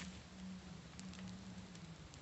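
Small fire of dry leaves and twigs burning, giving sparse faint crackles: a sharp pop about a second in and a few weaker ones after. A faint steady low hum runs underneath.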